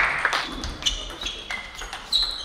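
Table tennis balls clicking off tables and paddles, with several matches going at once: a dozen or so sharp, irregular ticks, many with a short high ringing note.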